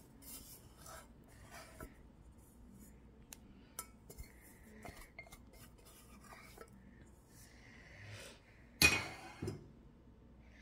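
Kitchen metalware being handled around a stainless steel mixing bowl: light scattered clicks and taps, then one sharp metallic clank about nine seconds in, followed by a smaller knock.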